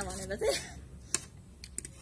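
A few light clicks of metal cutlery against plates and a small steel bowl as momos are eaten, one sharper click about a second in and a couple more near the end.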